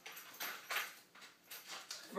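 A few soft, short rustling and handling noises, like packaging and bags being gathered up by hand.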